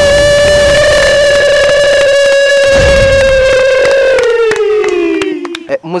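A single voice holding one long, loud, high cry for about four seconds, then sliding down in pitch before it stops near the end.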